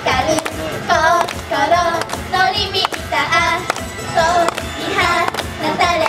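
Upbeat J-pop idol song: young female voices singing over a backing track with a steady beat.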